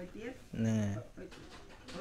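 A man's voice holding one low, drawn-out vowel, like a hesitation hum, for about half a second, with quiet low speech sounds around it.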